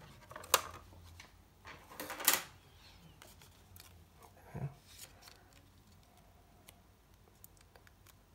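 A card-stock paper butterfly being handled and folded along its score line: a sharp click about half a second in, a brief scraping rustle of card about two seconds in, then a soft knock and faint ticks of paper.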